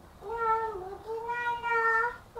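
A small child's high-pitched, drawn-out vocal calls without words: two in a row, the second longer and held almost level.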